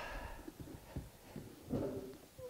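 Faint handling of a leather work boot: soft rustles and small knocks as its laces and tongue are pulled open, with a brief low sound near the end.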